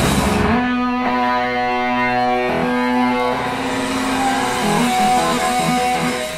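A live punk band's full sound cuts off about half a second in, leaving a distorted electric guitar holding ringing notes that change a few times.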